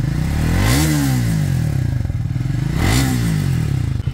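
Triumph Speed 400's 398 cc single-cylinder engine heard at its stock exhaust, idling with two throttle blips: a rev about a second in and a shorter one near three seconds, each rising and dropping back to idle.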